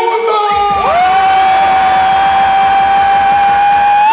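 A man's voice over a PA system holds one long shouted note for about three seconds, swelling up into it just under a second in, while a crowd cheers and whoops.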